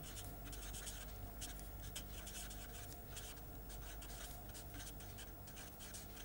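Marker pen writing on paper: a run of faint, scratchy pen strokes, one after another.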